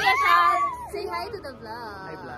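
Excited high-pitched voices squealing and calling out without words. The loudest is one long rising then wavering squeal in the first second, followed by softer voices.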